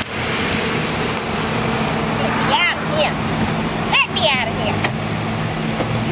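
Lexus sedan driving slowly, a steady engine and road noise. Short bits of voice come through about two and a half and four seconds in.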